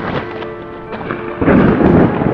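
Background music with a steady held tone, then a loud thunder crash sound effect about one and a half seconds in, rumbling on to the end.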